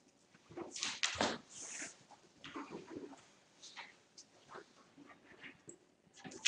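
Scattered rustling and light knocks of papers and objects being handled on a table, with one louder thump about a second in.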